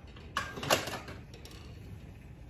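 Two short handling noises, clicks and a rustle, about a third and three-quarters of a second in, as things are set down and a wipe is handled on the craft table; the heat gun is off.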